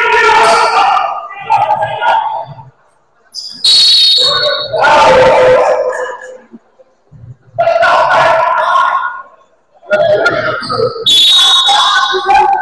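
Voices calling out loudly in several stretches over a basketball game, with a basketball bouncing on the gym floor.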